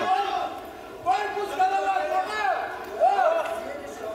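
A man's raised voice shouting in three short bursts, pitched well above ordinary talk, with a brief lull about half a second in.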